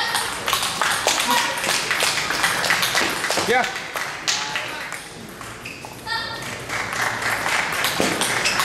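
Table tennis rally: the celluloid ball clicks sharply off paddles and the table, repeated throughout, over a background of voices in the hall.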